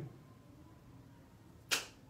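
Quiet classroom room tone, then a single short, sharp clap near the end: a child clapping once to answer that the letter sound starts their name.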